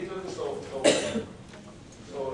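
A man coughs once, sharply, about a second in; it is the loudest sound here, among low talk at a meeting table.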